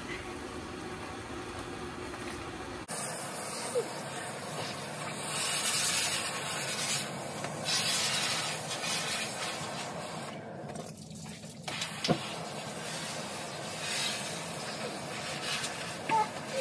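Water from a camping-shower hose spraying onto a pony's wet coat as it is washed down: a steady hiss that swells and fades as the spray moves. The spray drops away briefly about ten seconds in, and a single sharp click follows.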